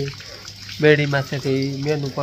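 A man's voice talking, starting about a second in, over a steady hiss of falling rain.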